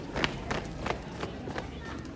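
Footsteps of a marching troop running in step, the boots striking the court together about three times a second.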